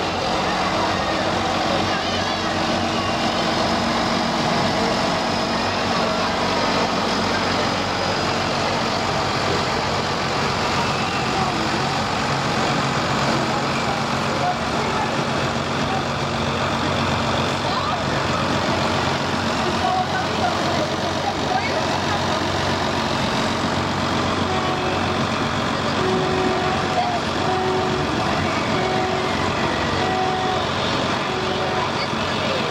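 Case IH MXM190 farm tractor's diesel engine running steadily, with people's voices around it.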